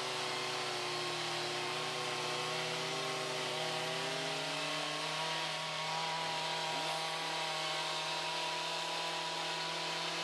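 Chainsaw engines running steadily at a held pitch, with more than one saw audible at once; one engine note shifts about halfway through.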